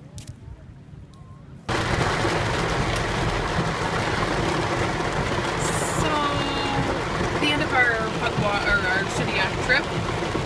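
Heavy rain on a moving car, heard from inside the cabin: a loud, steady rush of rain and road noise that starts abruptly about two seconds in.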